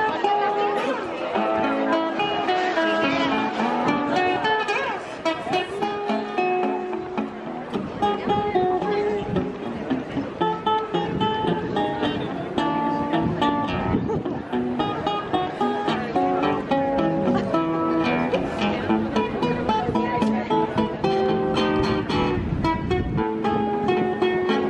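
Busker's amplified acoustic guitar playing a quick fingerpicked melody, a steady stream of plucked notes.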